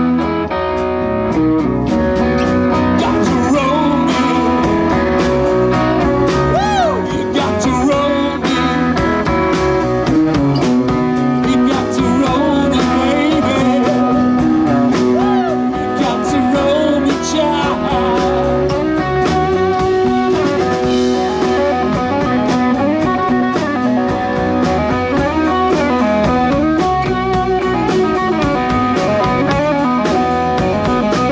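Live rock band playing an instrumental break, an electric guitar leading over bass and drums, with notes that bend up and down in pitch.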